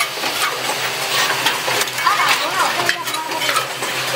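Automatic micro switch assembly machine running: a steady hum under a dense, continuous stream of small mechanical clicks and clatter from its moving parts. Faint voices come in about two seconds in.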